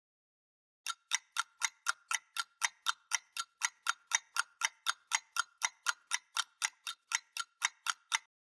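Ticking clock sound effect, about four sharp ticks a second, starting about a second in after silence. It marks the wait while the software processes.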